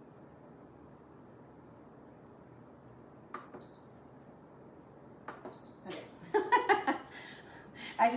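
Two short high beeps from a Pampered Chef Deluxe Multicooker's control panel, each just after a button click, about two seconds apart, over quiet room tone, as its pressure setting is keyed in. A woman's voice comes in briefly near the end.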